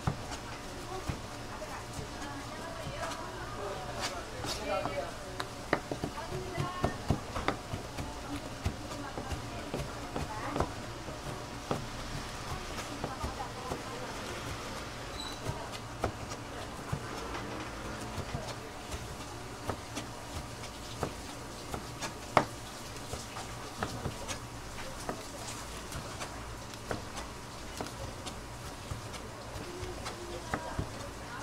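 Kitchen knife slicing raw stingray on a plastic cutting board: irregular taps and clicks of the blade striking the board, busiest a few seconds in, with one sharp knock past the middle. A steady hum runs underneath.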